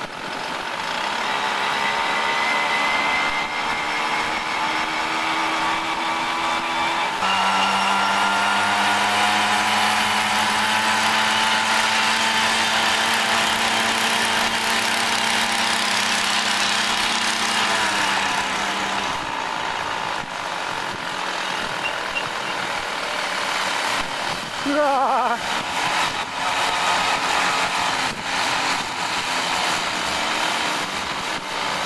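Small two-stroke auxiliary engines of several Saxonette and Spartamet motor-bicycles running together on a group ride, heard from one of the moving bikes. Several steady engine notes sit at slightly different pitches. One comes in louder about seven seconds in and drops away about two-thirds of the way through.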